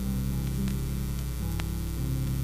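Acoustic guitar playing a few low, held notes of a song's introduction from a vinyl transfer, over a strong steady mains hum. A couple of sharp clicks of record surface noise are also heard.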